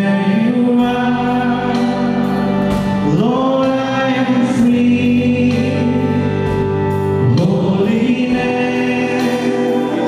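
Group of voices singing a Christian worship song together, holding long notes, with a rising slide into each new phrase about three and seven seconds in.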